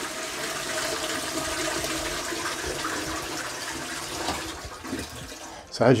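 Toilet flushing: a steady rush of water into the bowl, fading away about four and a half seconds in. The flush runs under a sheet of cling film stretched across the bowl, which catches the spray.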